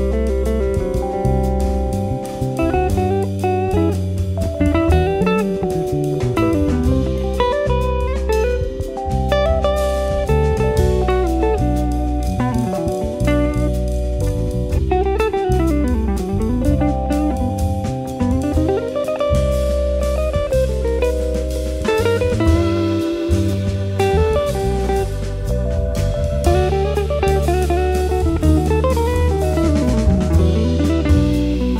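Jazz band playing an instrumental break with no vocals: a PRS electric guitar takes a single-note solo, its lines sliding and bending, over bass and drum kit.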